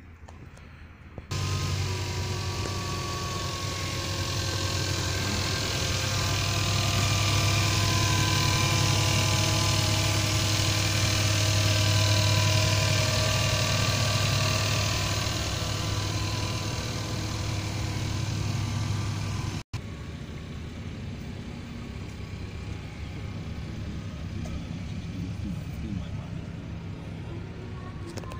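Kia Sportage engine idling steadily, loud from the open engine bay. After a cut about two-thirds of the way through, the idle goes on more quietly.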